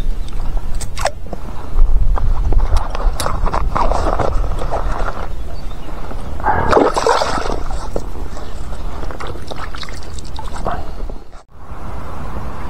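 Water splashing and sloshing as a caught pike is handled at the surface beside a float tube, in several louder bursts. Wind rumbles on the microphone throughout.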